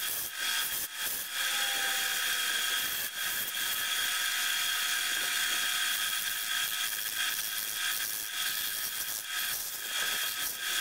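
Lathe spinning a cast resin cholla-skeleton blank while a hand-held tool cuts into it: a steady hiss of cutting over the lathe's high whine, with a few sharp ticks.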